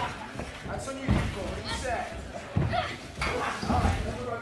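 Shouting voices in a large hall, with dull thuds on the wrestling ring canvas about a second in, in the middle and near the end.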